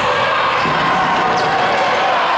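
Basketball crowd in an indoor sports hall cheering and shouting, a steady din, with a basketball bouncing on the court beneath it.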